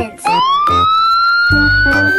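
Siren-like sound effect: a single tone that slides up quickly and then holds steady, over children's background music whose low beat comes back near the end.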